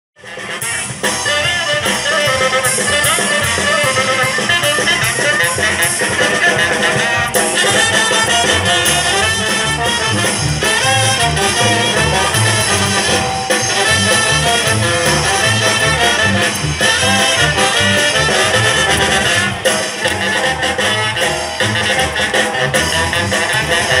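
Tlaxcalan carnival dance music played by a brass band, trumpets and trombones over a steady bass beat. It cuts in suddenly at the start.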